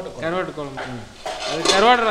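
A person talking throughout, the voice rising and growing loudest near the end.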